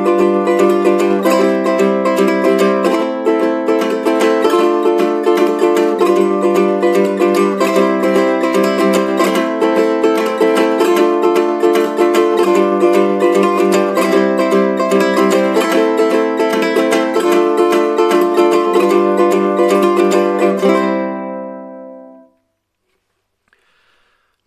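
Low-G ukulele played with banjo fingerpicks in a steady down-up eighth-note rhythm through a repeating C, Am, Dm, G7 chord progression, with three-note drags leading into the first beat and triplets on the third beat. The chords change about every second and a half, and the last chord rings out and fades about 21 seconds in.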